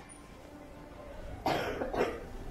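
A person coughing once, a short sudden cough about a second and a half in, over low room noise.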